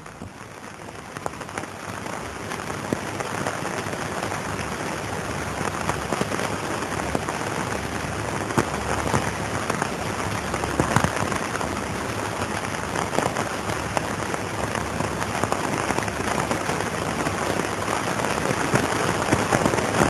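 Crackle and hiss of an old optical film soundtrack carrying no voice or music, made up of dense fine clicks over a steady hiss. It swells over the first few seconds, then holds steady.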